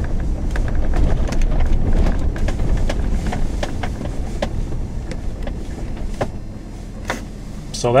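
A truck driving slowly over a rough dirt track, heard from inside the cab: a low rumble of engine and tyres with frequent knocks and rattles from the bumps. It gets quieter about six seconds in.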